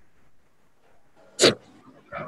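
Faint room tone broken once, about halfway through, by a single short, sharp sound.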